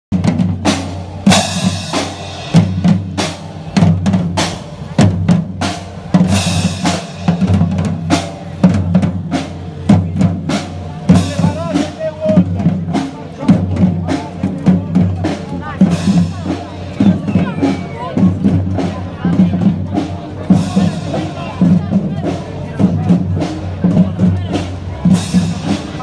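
Marching percussion band playing a steady beat on bass drums, snare drums and hand cymbals, with cymbal crashes every few seconds and saxophones playing along.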